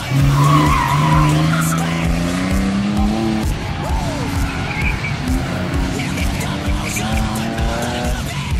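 BMW E46 Touring's engine revving hard as the car slides through a cone course, its pitch climbing over about three seconds, dropping, then climbing again later, with tyre noise from the slide. Music with a steady beat runs underneath.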